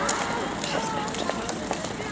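A crowd of people walking along a paved street: many shuffling footsteps and indistinct chatter of several voices at once.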